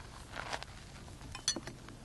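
A brush tapped against a water dish while it is loaded with water, giving one short clink with a brief high ring about one and a half seconds in. Faint small handling noises come before it.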